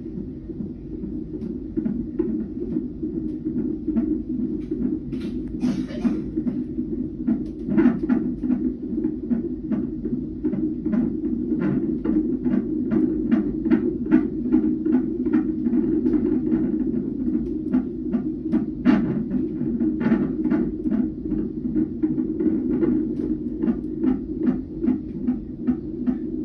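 Fetal heart monitor's Doppler loudspeaker playing a 28-week baby's heartbeat during a non-stress test: a fast, even pulse of about two beats a second over a steady low hum.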